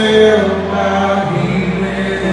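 A live rock band playing, with a man's voice holding long, slowly bending notes over the guitars and drums, recorded from the audience.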